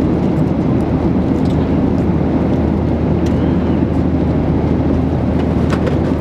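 Passenger airliner cabin noise in flight: a steady, even rumble of engines and rushing air, deep and unbroken.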